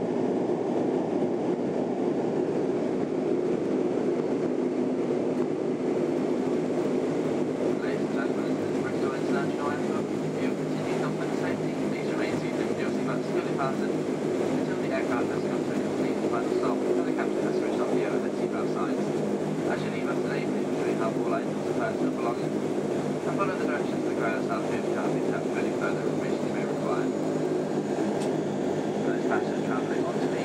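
Cabin noise of a Dash 8-300 on the ground after touchdown: its twin Pratt & Whitney Canada PW123-series turboprops and propellers give a steady drone with a layered hum as the aircraft rolls out and taxis. Indistinct voices sound over it from about eight seconds in.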